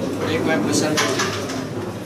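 Carrom men clicking and clacking against each other as they are gathered and stacked in the centre circle of the board, a few sharp clicks about a second in, over background voices.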